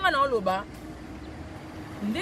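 A woman's voice for a moment, then a steady background of street traffic noise with a faint low hum.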